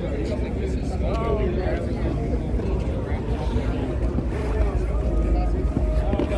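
People talking in the background over a steady low rumble.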